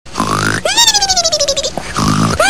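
Cartoon-style snoring: a short, rasping snore, then a long whistle that falls in pitch.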